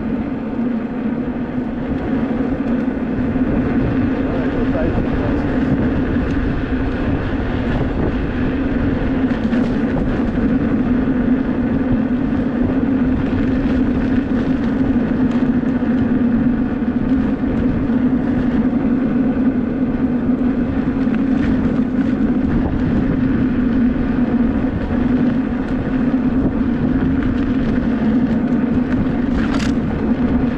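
Wind rushing over the microphone of a moving electric unicycle, a steady noise with a constant low hum underneath.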